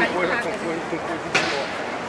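People talking over steady street noise, with a single sharp click a little over a second in.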